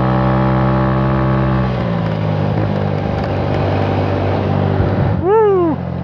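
Four-stroke scooter engine running on the move, its pitch climbing slightly over the first two seconds and then holding steady. Near the end comes a short, loud vocal call whose pitch rises and falls.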